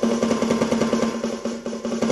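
An electronic drum kit's snare sound played as a rapid, even roll on the pad, the hits picked up by the pad's sensors and voiced by the drum module.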